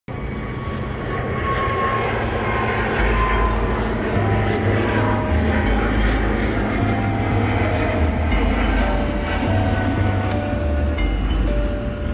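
Intro music with a low bass line that steps from note to note, over a steady dense rumble.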